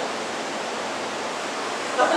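A steady, even hiss with no voice in it, cutting in and out abruptly between stretches of speech.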